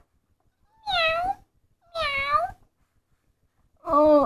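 Two meows, each about half a second long with a bending pitch, voiced by a person for the toy cat.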